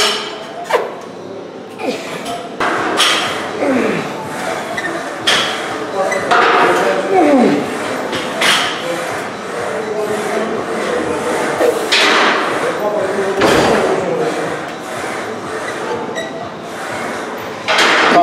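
A man grunting and breathing hard as he strains through the last reps of a set of EZ-bar preacher curls. There are falling-pitched groans about four and seven seconds in, and forceful breaths around twelve and thirteen seconds.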